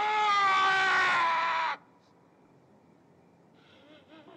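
A man's long scream of grief turning to rage, held at one pitch for about two seconds and then cut off sharply. Near silence follows, with a faint murmur near the end.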